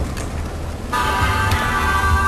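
Steady low rumble of a Jeep driving along a dirt trail, heard through a short break in background music. The music comes back in about a second in.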